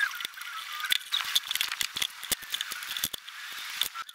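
Quick clicks, taps and rattles of hand tools and loose screws against a portable bandsaw's housing and a metal bench as the saw is taken apart. The sound is thin and tinny, with no low end.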